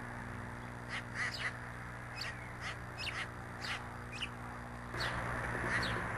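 Small songbirds chirping at a seed feeder: a string of short, high chirps, each falling in pitch, about two a second, starting about a second in. A steady low hum and hiss run underneath and grow louder near the end.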